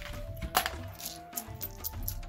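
A handful of small charms and trinkets clinking as they are scooped from a wooden box and shaken in cupped hands before a casting, with a sharp clink about half a second in and lighter clicks after.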